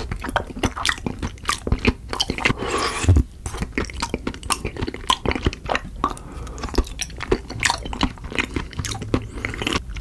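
A person biting and chewing grape-sized round treats pulled off a skewer. It is a dense, continuous run of sharp crunching clicks.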